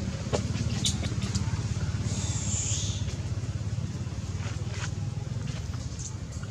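A steady low motor hum, like an engine running, with scattered small clicks. A brief high-pitched call comes about two seconds in.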